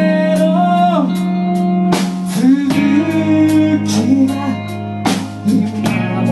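A rock band playing live: electric guitars and bass holding chords under a drum kit, with sharp drum hits about two seconds and five seconds in, and a man singing over it.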